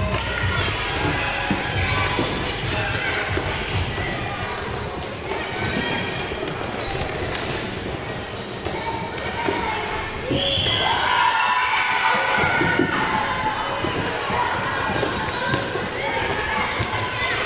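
Floorball game sounds in an echoing sports hall: plastic sticks clacking on the ball and floor and running feet, with children's shouts and voices. The shouting grows louder about ten seconds in.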